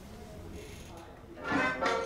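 A recording of a 1950s Moroccan radio jingle, backed by a small orchestra, starts abruptly about one and a half seconds in. It comes in with short repeated chords, a few a second, after faint room noise.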